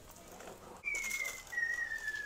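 A thin, high whistle-like tone starts about a second in and glides slowly down in pitch, with a brief break partway, over a faint rustle.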